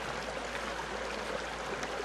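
Steady, even rushing noise like a running stream.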